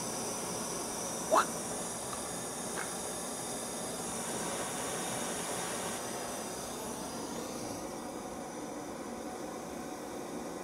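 Handheld gas torch flame hissing steadily as it heats a copper cable lug to melt solder inside it. A brief chirp cuts in about a second and a half in.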